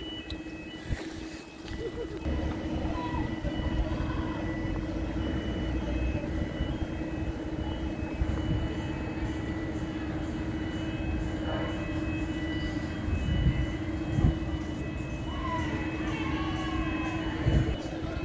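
Outdoor city background sound: a steady low hum over a rumble, with a faint high beep repeating throughout.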